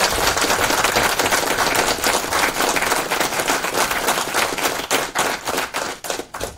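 Audience applauding, many hands clapping at once, thinning out near the end.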